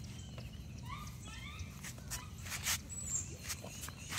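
A puppy giving a quick run of short, high whimpers about a second in, over faint ticks of paws on concrete.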